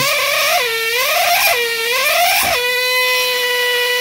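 Trilobite pneumatic air scribe running with a steady buzzing tone. Its pitch sags and recovers three times in the first half as the stylus is pushed too hard into the rock, then holds steady. The noise is the sign of the pen being pushed too hard, close to stalling.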